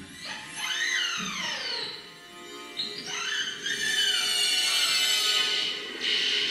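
Electronic synthesizer tones gliding in pitch: one sweeps up and falls back over the first two seconds, another rises and falls about three seconds in, then a high tone is held steady.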